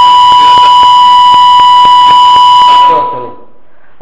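A loud, steady, whistling tone at a single pitch lasts about three seconds over a man's voice, then cuts off.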